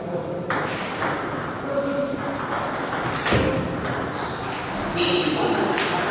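Table tennis play: a run of sharp, irregular clicks as the plastic balls strike the bats and bounce on the table, in a hall with voices in the background.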